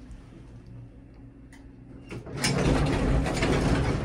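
A traction elevator car stopping at a floor: a low steady hum, a few mechanical clicks, then about two and a half seconds in the car doors slide open with a loud, sustained noise.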